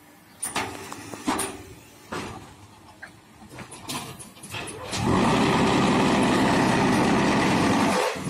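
QT4-18 automatic hydraulic concrete block machine working through its cycle: scattered metal clanks and knocks as the mould and pallet move, then about five seconds in the mould's vibration starts, a loud steady rattling drone that cuts off sharply near the end.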